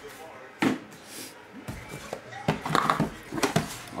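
Cardboard mailer box being handled and its flap pried open, with rustling and a few light knocks and clicks of the cardboard.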